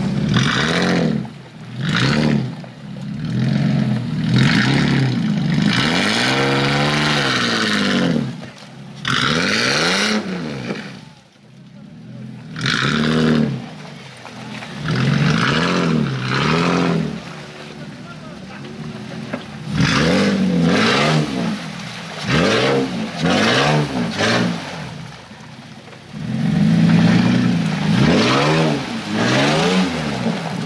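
Off-road SUV engines revving hard in repeated bursts, the pitch climbing and falling again every second or two, as lifted trucks on big mud tyres push through deep mud with spinning wheels. There is a short lull about eleven seconds in.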